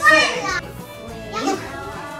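Children's voices in a classroom over background music, with a loud high-pitched child's call in the first half-second and a man saying "look" about a second and a half in.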